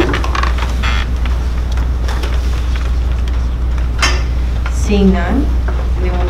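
Meeting-room background: a steady low hum under faint murmured voices, with a few small clinks and knocks of things being handled on the tables.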